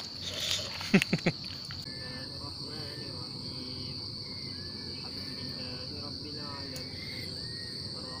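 Steady, high-pitched evening insect chorus, with a few bursts of voices and laughter in the first second or so and faint distant voices after that.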